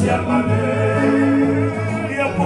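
A group of men singing a Tongan kava-club (faikava) song together in harmony, with held notes.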